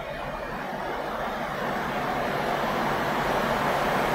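Road traffic noise, an even rushing sound that swells gradually louder.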